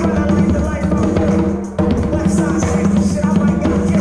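Conga drums played by hand, slaps and open tones over a loud recorded hip-hop backing track with a beat and pitched instruments; the music dips briefly a little before two seconds in.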